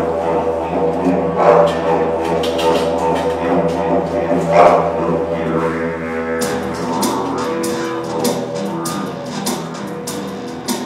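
Music led by a low, steady didgeridoo drone, with other instruments playing over it. The drone drops out about six and a half seconds in, and the rest of the music carries on.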